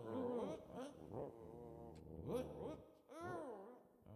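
A small dog whimpering: about five short, quiet whining cries, each rising and falling in pitch.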